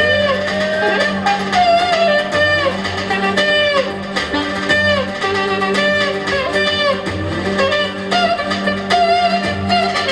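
Live Roman havası dance music: a saxophone plays an ornamented melody full of bent, sliding notes over a steady low drone and a regular beat.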